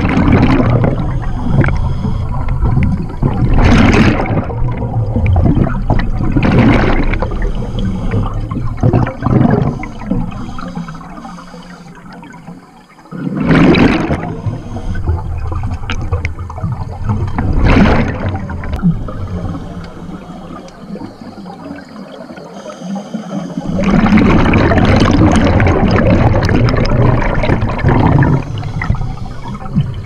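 Scuba regulator exhaust bubbles heard underwater: bursts of gurgling bubbles every few seconds, then a longer spell of bubbling near the end.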